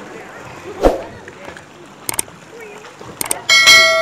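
Swimmers splashing in a pool, with a sharp thump about a second in. Near the end come a few quick clicks and a loud ringing bell chime that fades out slowly: the sound effect of a subscribe-and-bell button animation.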